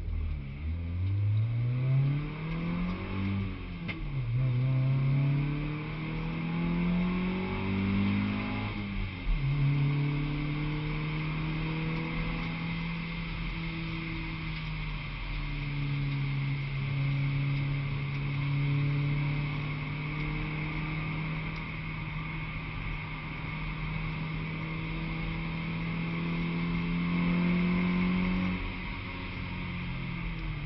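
Honda Civic track car's engine heard from inside the cabin, accelerating through the gears with two upshifts in the first nine seconds. It then runs at steadier revs that climb slowly, and eases off near the end. A steady hiss runs underneath.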